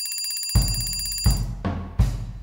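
A telephone-style alarm ringing, a high electronic ring that stops about a second and a half in. Background music with a regular beat comes in about half a second in.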